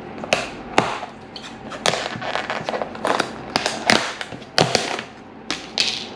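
Clear plastic takeaway food container being opened by hand: its snap-on lid is unclipped and pulled off in a run of irregular sharp plastic clicks and snaps.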